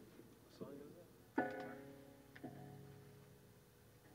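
Quiet test notes on an electric guitar: a plucked chord rings out about a second and a half in and fades, and a lower note joins about a second later.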